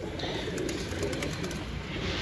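Domestic pigeons cooing in a crowded loft: faint, low, wavering calls over a steady low rumble.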